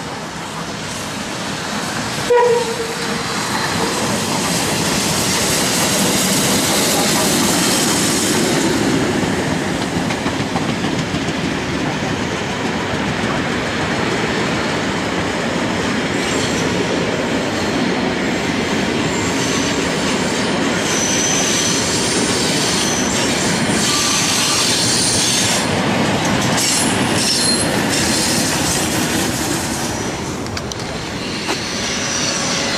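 A train passing close by, its wheels clattering over the rails in a long steady rush that builds over the first few seconds and holds almost to the end. A short toot of horn or whistle sounds about two seconds in, and thin high wheel squeals come in the later part.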